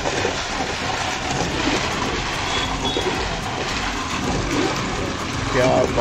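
A ladle stirring ice, fruit pieces and milk in a large aluminium pot as milk is poured in: a steady, even sloshing and churning.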